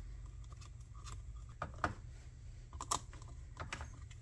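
Light, irregular clicks and taps, about half a dozen, as parts are handled and fitted on a chainsaw's plastic housing, over a steady low hum.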